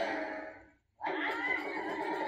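Harmonium-and-tabla folk music from a television fades out to a brief silence just before a second in. It is followed by a long, wavering, wailing voice-like call.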